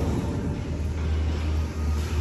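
A weighted load dragged across a concrete floor by a thick rope pulled hand over hand, a steady low scraping rumble.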